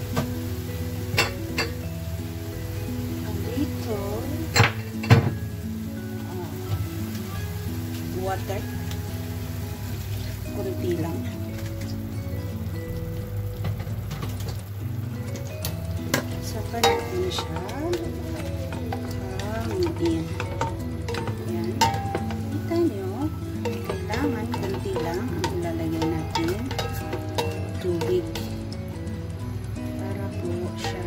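Broccoli and scallops sizzling in a stainless steel wok as a spatula stirs and turns them, with scattered sharp clacks of the spatula against the pan.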